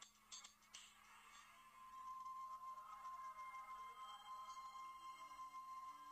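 Faint electronic music from the Adobe Flash Player 10 demo video, played through a phone's speaker. There are a few sharp clicks in the first second, then a sustained high synth tone from about two seconds in.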